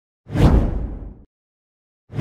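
An intro whoosh sound effect: one swoosh with a deep low rumble beneath, swelling quickly and fading out over about a second, then cutting off.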